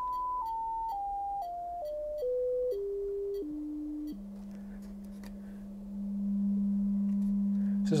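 Sine test tone played through a KLH Model Eight acoustic-suspension speaker cabinet, stepping down in pitch about every half second through about eight steps, then holding a low tone from about four seconds in that grows louder near six seconds. At the low tone the speaker gives a little bit of rattling.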